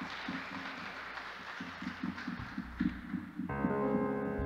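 Quiet live band music between songs: a soft, hazy wash with short low notes pulsing irregularly, then a sustained keyboard chord comes in near the end.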